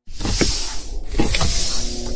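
Cinematic trailer whoosh sound effect: a loud rush of noise over a low rumble, with two downward sweeps, the first about half a second in and the second just past a second in.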